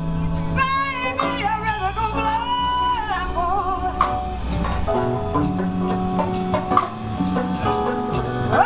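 Live blues band playing: a woman singing lead with a bending, gliding melody over electric guitar, keyboard, bass and a steady drum beat.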